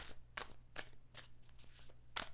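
Faint, crisp flicks of a tarot deck being shuffled by hand, a little over two a second.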